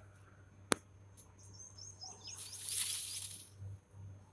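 A rustling, shivering hiss that swells and fades in the second half, the sound of a peacock shaking its fanned train feathers as it displays, with a small bird chirping a quick run of about eight short high notes over it. A single sharp click comes early on.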